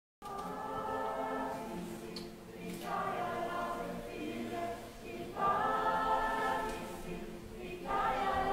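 A group of voices singing a cappella, holding long chords in phrases that begin about every two and a half seconds.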